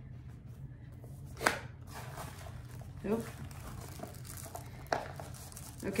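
Cardboard retail box and tissue paper being handled during unboxing. There is a sharp snap about a second and a half in, then paper crinkling, and another snap near the end.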